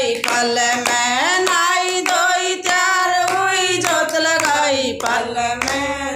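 A small group of women singing a Hindi devotional bhajan together, keeping time with steady rhythmic hand claps.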